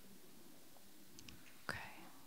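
A quiet pause: faint room tone, broken near the end by one softly spoken word.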